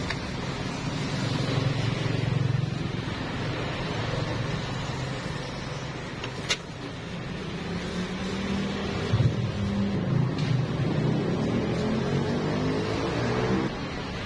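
Street traffic with a motor vehicle engine running close by; its note climbs in the last few seconds as it revs or pulls away. A single sharp click comes about six and a half seconds in.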